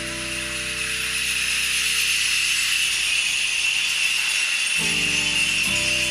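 Hand percussion in a live jazz-fusion set: a steady shimmering rattle of shaken jingles runs throughout. A sustained low pitched note fades out just after the start and comes back in about five seconds in.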